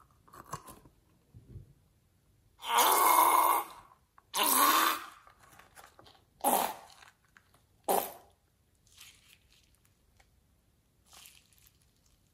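Thick slime squelching as it is squeezed out of the cut neck of a rubber balloon: two longer squelches about three and four and a half seconds in, then two short ones about a second and a half apart.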